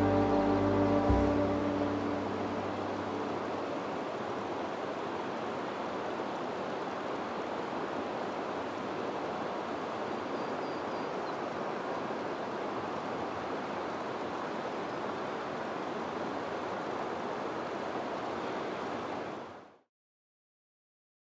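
The last notes of background music die away in the first couple of seconds, leaving a steady outdoor rushing noise with no pitch or rhythm. The noise fades out to silence just before the end.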